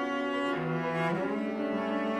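Cello playing sustained bowed notes in a contemporary piece: a lower note enters about half a second in and slides upward just after a second.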